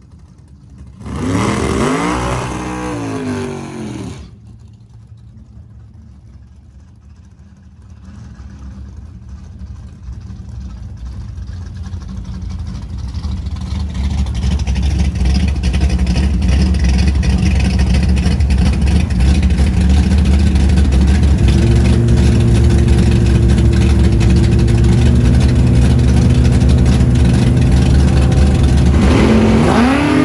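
Supercharged Ford Coyote 5.0 V8 in a drag car: one rev up and back down about a second in, then running steadily and growing louder while held on the line, then launching near the end with its pitch climbing fast.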